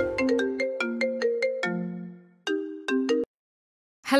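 Mobile phone ringtone: a short melody of chiming notes that fades, then two more short notes before it cuts off abruptly as the call is answered.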